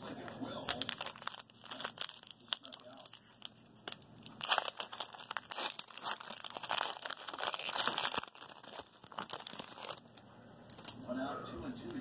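Foil wrapper of a 2008 Donruss Elite football card pack being torn open and crinkled by hand: a run of crackles and rips, loudest in the middle, that stops about two seconds before the end.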